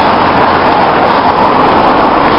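Loud, steady rushing of wind and road noise on a bicycle camera's microphone while riding, as a car overtakes close alongside.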